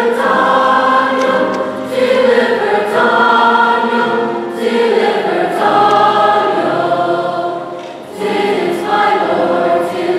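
Mixed choir singing held chords in long phrases, with brief breaks between phrases about two, four and a half and eight seconds in.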